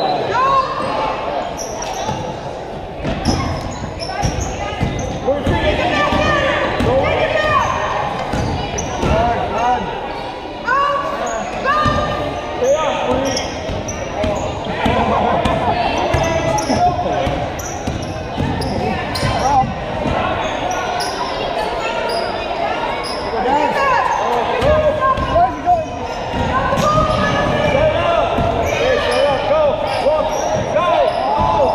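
Basketball game in a large gym: a basketball being dribbled and bouncing on the hardwood court, sneakers squeaking in many short chirps, and spectators and players calling out, all echoing in the hall.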